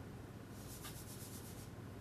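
Chalk writing on a blackboard: a quick run of short, faint scratchy strokes starting about half a second in and lasting about a second.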